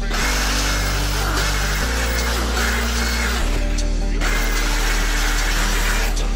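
Handheld power grinder grinding a steel knife blank clamped in a vise, a steady grinding hiss with a short break about four seconds in, over background music with a bass line.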